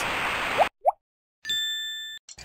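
Cartoon sound effects: a hose spray hiss that cuts off suddenly, a quick rising whistle, then a bright bell-like ding that rings and fades.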